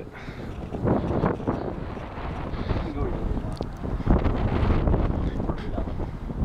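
Wind buffeting the microphone outdoors: a low, uneven rumble, strongest about four seconds in, with faint indistinct voices under it.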